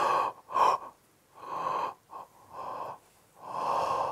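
A man breathing out and in heavily through the mouth, a series of about six breathy huffs and gasps in quick succession with no voice in them, demonstrating pent-up energy being let out through the breath.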